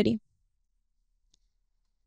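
A woman's voice through a microphone finishes a word, then near silence, broken only by one faint tick a little past halfway.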